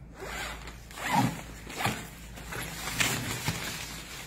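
A zipper in a suitcase's fabric lining being pulled open in about four short strokes, with the rustle of the lining being handled and lifted.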